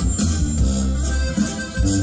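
Live Mexican banda music: trombones, clarinets and other winds playing over a heavy, steady low bass.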